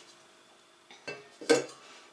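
Stainless-steel mixing bowl of a planetary stand mixer set down on a wooden table: a light knock about a second in, then a louder clunk with a brief metallic ring.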